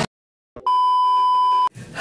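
A single steady electronic beep, one pure high tone lasting about a second, starting and stopping abruptly.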